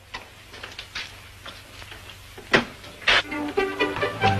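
Steady hiss of an old film soundtrack, with two sharp knocks about half a second apart past halfway, then music coming in near the end.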